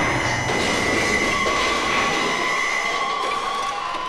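Psychedelic trance track in a beatless breakdown: steady high synth tones held over a hissing, metallic noise texture, with no kick drum.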